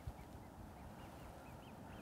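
Faint bird calls: short, high chirps repeating a few times a second over a quiet background.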